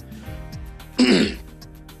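A man clearing his throat once, about a second in, over steady background music.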